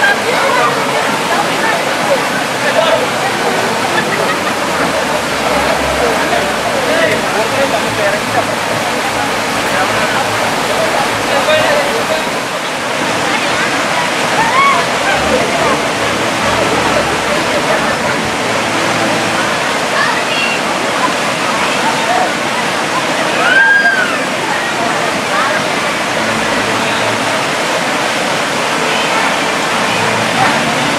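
Steady rush of flowing stream water, with many voices of a group of women in the water talking and calling out over it and some sloshing of water; one louder high call rises and falls about three-quarters of the way through.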